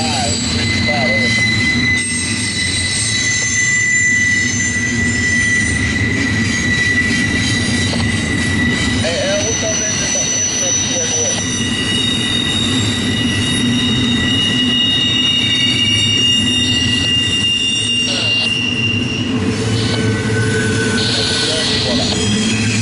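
Double-stack intermodal freight cars rolling steadily past, their steel wheels rumbling on the rails, with thin high-pitched wheel squeals that hold for several seconds at a time and change pitch partway through.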